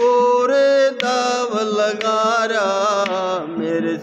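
A man singing a drawn-out, wavering vocal phrase of a devotional bhajan, with an ektara's single string plucked about once a second.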